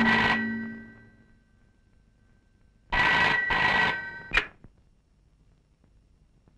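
Black rotary desk telephone's bell ringing in a double-ring pattern. The end of one double ring fades out in the first second, and another double ring comes about three seconds in. It cuts off with a sharp clack soon after.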